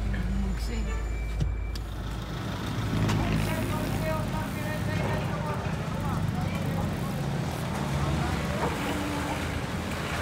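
Low rumble of a car's engine and road noise heard from inside the cabin. After about two seconds this gives way to an outdoor background of indistinct voices and traffic.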